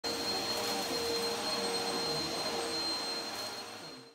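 Upright vacuum cleaner running steadily as it is pushed over a rug: a steady rush with a high whine on top. It fades away near the end.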